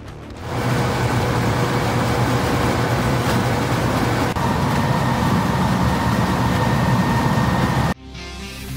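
Large DeWind one-pass chain trencher running and cutting, a steady, loud machine noise that comes up about half a second in.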